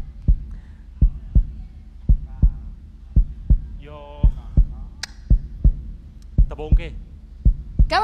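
Deep low thumps in a steady double-beat pattern, about one pair a second, like a heartbeat, with brief faint voice twice in between.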